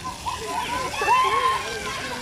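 Children's voices calling and shouting over the steady spray and splash of splash-pad fountain jets.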